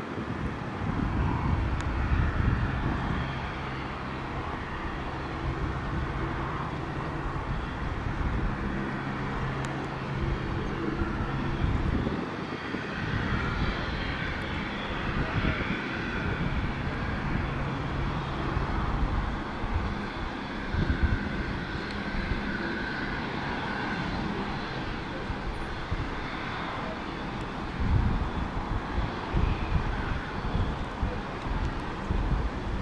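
Steady aircraft engine noise with a low rumble, mixed with gusts of wind on the microphone.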